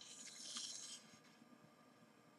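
Faint crinkling rustle of aluminium foil on a foil-wrapped styrofoam egg stand being handled, lasting about the first second and then dying away.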